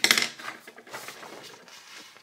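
Small hard drawing supplies clattering on a desk: one loud clatter that rings briefly right at the start, then fainter rattling and clicks.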